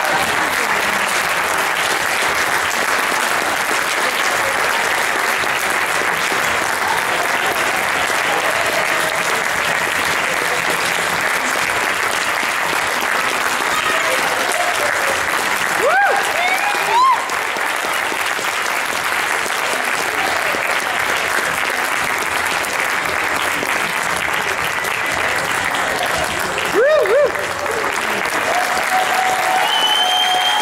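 Audience applauding steadily, with a few short shouts from the crowd that glide in pitch, about halfway through and again near the end.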